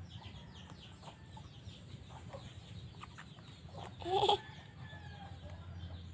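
Chickens clucking, with many short, high, falling peeps and one louder call about four seconds in, over a steady low hum.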